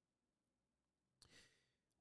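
Near silence, broken a little past halfway by a brief faint breath close to the microphone.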